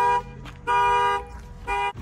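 Car horn honking in a car-alarm pattern: three short, even honks about a second apart, set off as the car door is opened.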